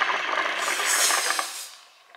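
Hookah water bubbling as two people draw on its hoses at once: a rapid crackling gurgle that fades out just before two seconds in.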